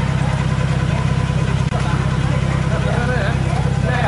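A motor vehicle engine idling close by, a steady low pulsing with a fast even beat. Faint voices of people talking sit behind it.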